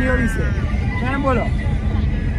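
Voices talking over the steady low rumble of a moving road vehicle.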